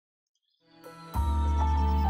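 Silence, then background music fading in a little over half a second in: sustained tones, joined by a low held bass at about a second in.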